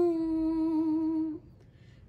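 A woman's unaccompanied singing voice holding one long steady note of a Sindhi song, which breaks off about a second and a half in, leaving a short pause before the next line.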